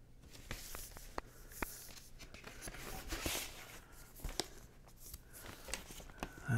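Handling of a vinyl LP jacket and paper inner sleeve: faint rustling of card and paper with scattered light taps, and a soft swish about three seconds in as the record is turned over.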